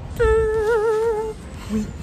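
A woman humming one held note with a wavering vibrato for about a second; a spoken word starts near the end.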